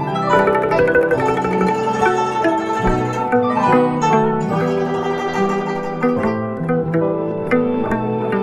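Guzheng (Chinese zither) being plucked, playing a flowing melody of many quick notes with lower notes ringing beneath it.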